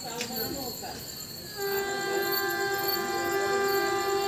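Locomotive horn of an approaching express train sounding one long steady blast, starting about one and a half seconds in, over faint voices on the platform.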